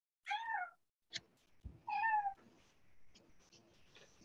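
A cat meowing twice, two short calls rising and falling in pitch about a second and a half apart, picked up faintly by a video-call participant's microphone.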